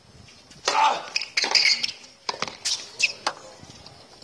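Tennis point opening with a serve: a sharp hit of racket on ball about three-quarters of a second in, then several more sharp hits and bounces of the ball during the rally.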